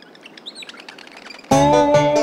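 Quiet bird chirping over a soft outdoor hiss, then about one and a half seconds in a loud, bright keyboard tune with a bass line starts suddenly: the intro of a children's song.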